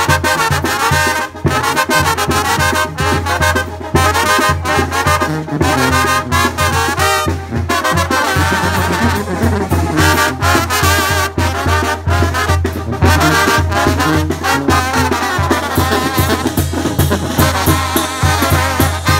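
Mexican brass banda playing a son: trombones and trumpets carry the tune over a sousaphone bass line that pulses with a steady, bouncing beat.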